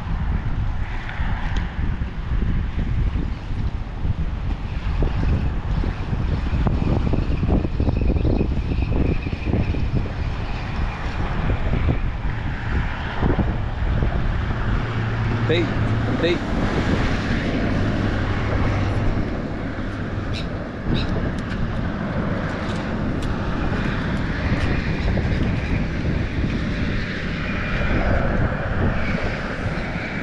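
Steady low outdoor rumble of wind and passing traffic across the open pier. A few short clicks sound around the middle.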